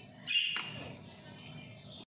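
Metal spoon mixing a mayonnaise-coated shredded chicken filling in a glass bowl. There is a short scrape against the glass about half a second in, then fainter stirring.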